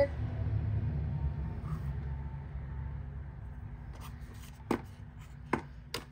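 A plastic soap case and soap bar handled in the hands, giving about four sharp clicks and taps in the last two seconds, over a low steady hum.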